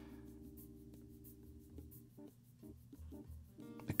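Faint held chord of background music, with light fingertip taps on a mixing console's touchscreen as a name is typed on its on-screen keyboard.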